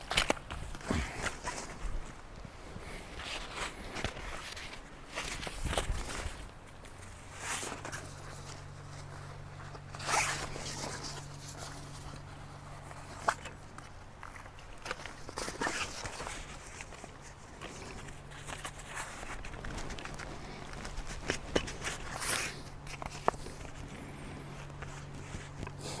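Ultralight folding camp chair being put together by hand: the nylon seat fabric rustles and swishes, and the frame poles click and rattle as the seat's corners are worked over the pole ends, with shuffling on dry leaf litter. A steady low hum runs underneath from about six seconds in.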